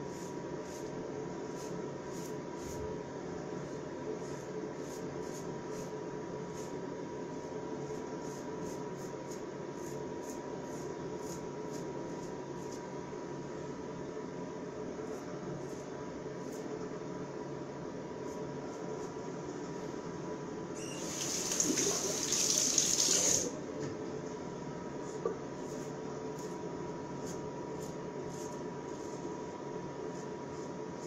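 Ikon open-comb safety razor with a fresh Lord blade scraping through lathered stubble in many short strokes, over a steady background hum. About two-thirds of the way through, a tap runs for about two seconds.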